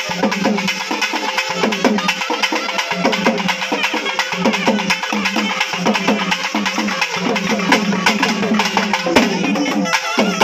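Festival barrel drums beaten with sticks, playing a fast, dense rhythm of strokes with no break, with a steady held tone sounding underneath.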